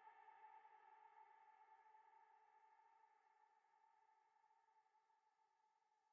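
Near silence: a faint, steady pitched tone with overtones, slowly fading away.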